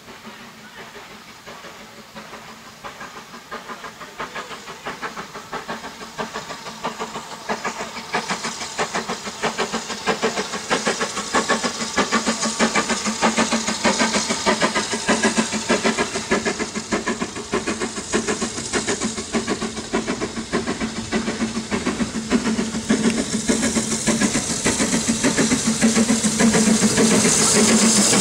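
BR Standard 9F 2-10-0 steam locomotive No. 92212, a two-cylinder engine, working a passenger train: a rapid, steady rhythm of exhaust beats that grows louder as it approaches and passes close by, with steam hiss rising near the end.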